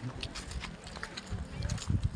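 Rumbling handling noise on a phone microphone as the phone is swung about, with scattered clicks, growing stronger in the second half.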